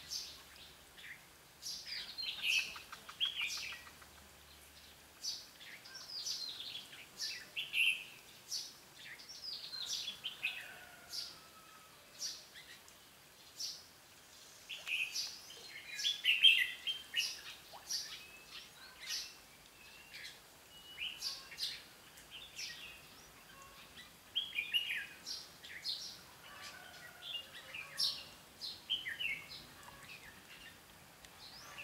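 Red-whiskered bulbuls calling and singing in short, chirpy phrases with sharp high notes, coming in bursts with brief gaps. The loudest burst comes a little past halfway.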